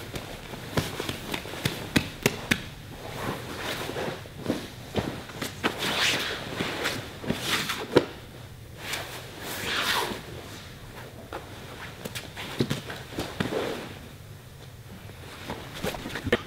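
Two grapplers in gis drilling an armbar on a foam mat: scattered thumps and slaps of bodies, hands and feet on the mat, with rustling of the heavy cotton gis.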